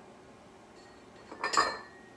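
Glass bottles clinking together once, loudly, with a short ring, as a Tabasco bottle is picked up from among the seasoning bottles.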